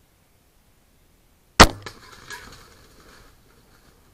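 A crossbow fired at a wild boar: one sharp, loud crack about one and a half seconds in. Fainter scuffling and knocks follow and die away over the next two seconds.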